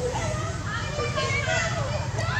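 High-pitched squealing calls from macaques, several overlapping, each sliding up and down in pitch.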